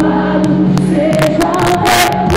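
Live Christian worship music: a band with drum kit, keyboard and bass guitar playing under singing voices, with drum and cymbal strokes through it.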